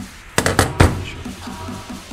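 Steel T-handle socket wrench set down on the workbench: a quick clatter of several sharp metallic knocks about half a second in, the last one the loudest. Background music with a steady beat plays throughout.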